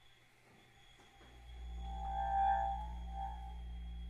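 Chamber ensemble of flute, bass clarinet, cello and percussion playing soft contemporary music. A low held tone swells in about a second in, and a brief cluster of higher held tones rises and fades around the middle.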